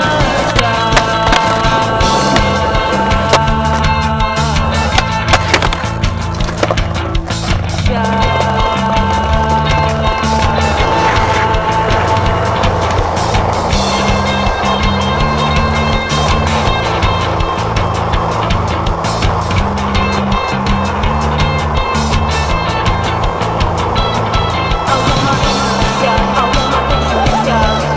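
Music soundtrack with a repeating bass line and held melody notes over a steady beat.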